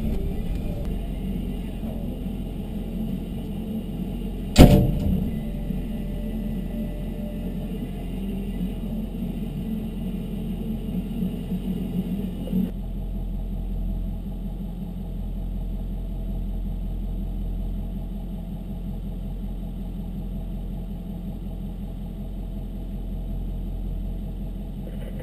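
Engine of a Lenco BearCat armored vehicle running, a steady low drone heard from inside the vehicle. A single sharp, loud knock about four and a half seconds in is the loudest sound.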